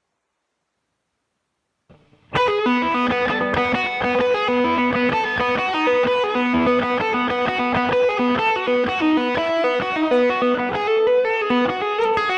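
Parker Fly Mojo electric guitar played through a homebuilt valve amp (a Valve Junior with a Mercury Magnetics hotrod kit, driving a 25-watt Celestion Greenback speaker). A solo lead line of quickly changing single notes starts suddenly about two seconds in.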